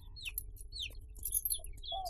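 Small birds chirping: a scatter of short, quick calls, several falling in pitch.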